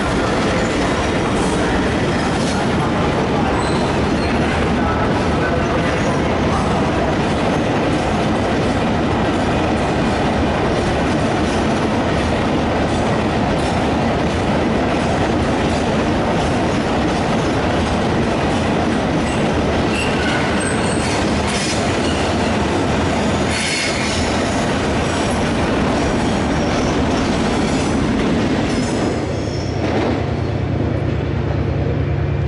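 A freight train hauled by GBRf Class 66 diesel locomotives passing close at low speed, followed by a long rake of wagons rolling by. There is a continuous rumble, wheel squeal, and clickety-clack over rail joints that is strongest in the second half.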